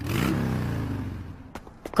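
Cartoon race car engine sound effect, its pitch falling as it winds down and fades out over about a second and a half, followed by two faint clicks.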